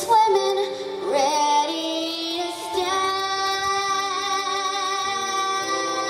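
A ten-year-old girl singing into a stage microphone with musical accompaniment; about three seconds in she settles into one long held note.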